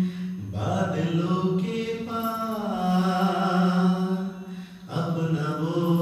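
Slow devotional singing in long, drawn-out held notes, with a short break about five seconds in before the next phrase.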